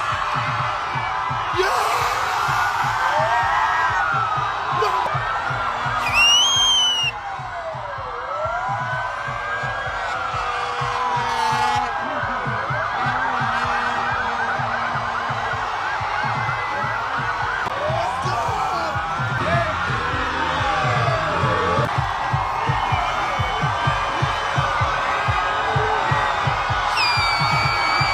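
Several police escort sirens wailing, their pitch rising and falling in slow overlapping sweeps, with a rapid yelp for a few seconds in the middle, over a noisy crowd. A sharp, loud whistle about six seconds in.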